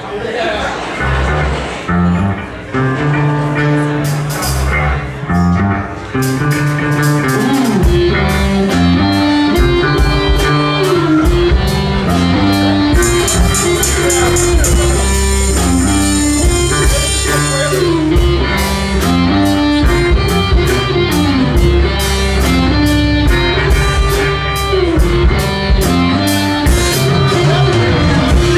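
A live rock band playing the opening of a song with electric bass and guitar. It starts sparse, then even, regular drum strokes come in about six seconds in and the full band plays on from about eight seconds.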